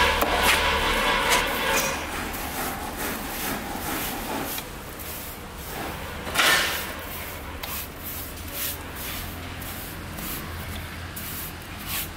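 Steel trowel scraping and spreading wet cement mortar over the face of a concrete block, in a series of short strokes with one louder scrape about six and a half seconds in.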